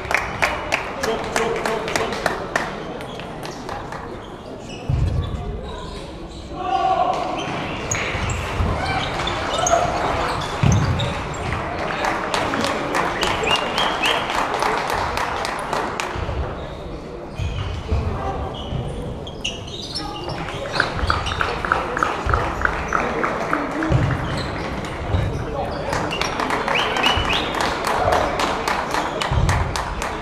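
Table tennis balls clicking off bats and tables in quick runs that stop and start, rally by rally, with the echo of a large sports hall and the chatter of voices behind.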